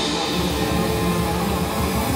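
Live rock band playing an instrumental passage with electric guitars, bass guitar and drums, steady and continuous.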